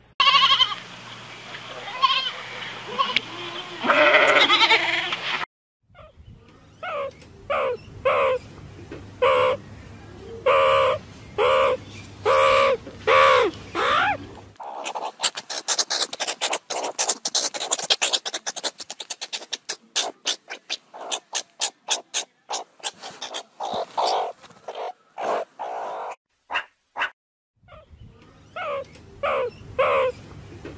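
Goats bleating, a cluster of loud calls at first and then a run of short repeated bleats about every second, followed from about halfway by a long run of rapid, high, short chirps and clicks from another animal.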